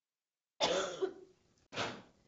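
A person coughing twice, about a second apart, the second cough shorter than the first.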